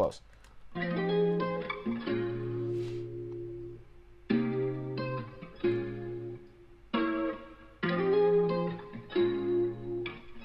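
Soloed guitar track from a song mix playing a run of chords, each struck chord ringing out into the next, with short breaks between phrases: a big, full sound.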